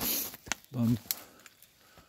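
A man's voice saying one short word, opened by a brief rush of noise and a sharp click about half a second in, then a quiet stretch with a few faint ticks.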